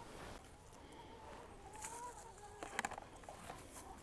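Faint, drawn-out chicken call wavering in pitch for about a second and a half, followed by a few soft clicks.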